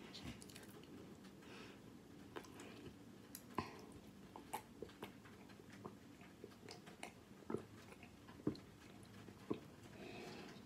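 A person drinking the leftover chocolate-flavoured water from a cereal bowl: quiet swallows and wet mouth clicks, roughly one a second, irregularly spaced.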